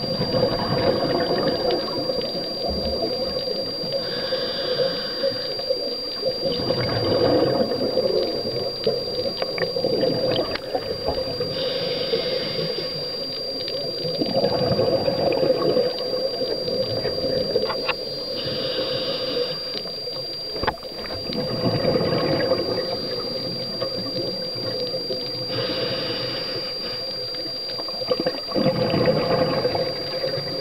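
Scuba diver's breathing heard underwater: regulator exhaust bubbles rushing and gurgling in surges every three to four seconds, one surge per breath. A thin, steady high-pitched whine runs underneath.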